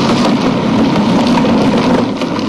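Hard plastic wheels of a toy wagon rolling fast over asphalt, a loud continuous rattling rumble.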